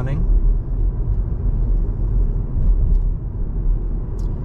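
Steady low rumble of tyres and engine heard from inside a moving car's cabin at road speed.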